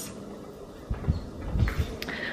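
Quiet room tone with a few soft, low thumps in the second half.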